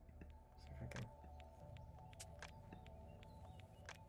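Near silence: a faint, steady background hum with scattered soft clicks.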